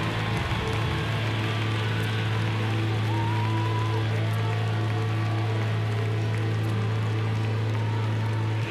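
Live rock band music: a steady low note held for several seconds, with faint gliding whistles over it.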